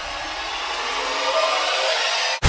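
A rising rush of noise that grows steadily louder while its low end thins away: an edited-in riser sound effect building toward a cut.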